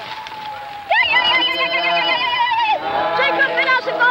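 Loud raised human voice in long, held, slightly wavering tones, starting suddenly about a second in after a quieter stretch.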